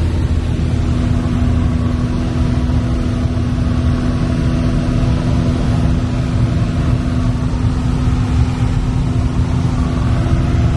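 Piper PA-28-160 Cherokee's four-cylinder Lycoming O-320 engine and propeller droning steadily in cruise, heard from inside the cabin.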